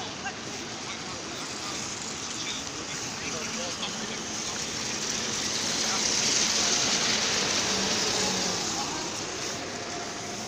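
A Crossway city bus driving past close by on wet paving, its engine and tyre hiss swelling to a peak about six to eight seconds in, then fading as it moves away.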